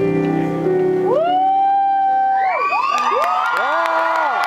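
The last chord of a solo piano song dies away, then the audience cheers: a long 'woo' that rises, holds and falls about a second in, soon joined by more overlapping whoops, with the first claps near the end.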